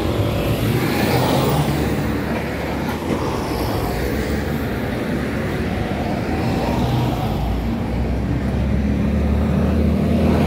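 City bus moving slowly past close by, its diesel engine running with a steady low rumble under general street traffic noise.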